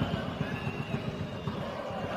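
Stadium crowd noise from a televised football match: a steady hum of many voices from the stands.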